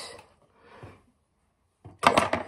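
A quiet pause in a kitchen with a faint soft sound about a second in, then a loud noisy handling sound that starts just before the end as a hand moves right by the microphone over a plastic cutting board.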